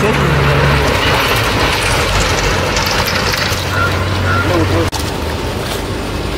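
A small engine-driven water pump running steadily under loud splashing and sloshing of shallow muddy water as people wade and grope through it. The sound breaks off sharply for a moment just before five seconds in.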